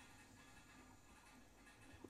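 Near silence: room tone between spoken remarks.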